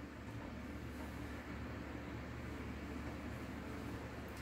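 Steady low hum and faint hiss of room background noise, with no distinct events.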